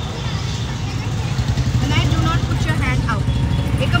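Steady low rumble of a moving auto-rickshaw and the traffic around it on a busy street, heard from inside the open cabin, with snatches of voices about halfway through.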